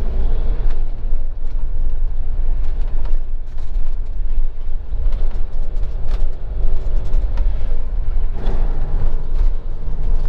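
Motorhome cab noise while driving: a steady low engine and road rumble, with occasional small knocks and creaks from the cabin.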